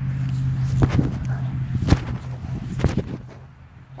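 Three sharp hits about a second apart, the middle one loudest, from a knife being swung down and striking the grassy ground; one is a hard hit. A steady low hum runs beneath them and fades about three seconds in.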